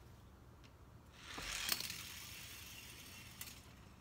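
Toy car rolling down a wooden board ramp raised on two blocks: a rolling rush that starts about a second in, peaks with a sharp click, and dies away over about two seconds.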